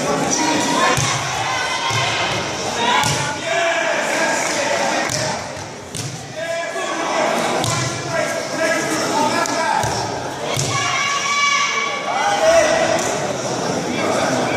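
Repeated thuds of feet and bodies striking tatami mats during an aikido bout, with a throw to the mat near the end, amid voices and shouts in a large echoing hall.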